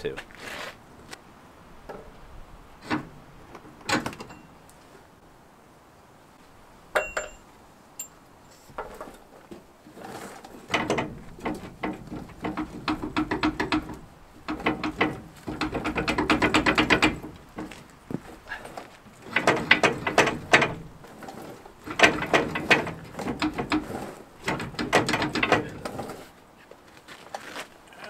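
Hand socket ratchet clicking in repeated short runs of fast, even clicks, working the rear leaf-spring shackle bolt on a Ford Super Duty. A few scattered knocks and clicks come before the ratcheting starts.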